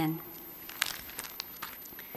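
The end of a spoken 'Amen', then a few soft, scattered clicks and rustles over low room tone.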